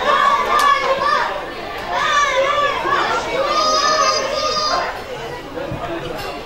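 Young football players shouting and calling out, high-pitched children's voices, with one long held shout about halfway through.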